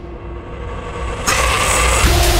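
Hard techno in a build-up without drums: a held synth tone over a deep rumbling bass swells louder, and a rising noise sweep brightens about a second and a half in.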